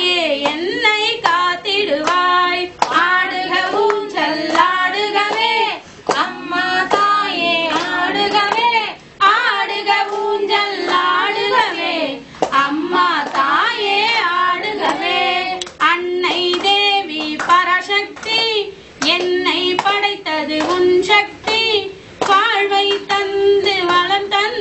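A woman singing a Tamil devotional song to the mother goddess, read from a book, in melodic phrases of a few seconds each with brief pauses between them.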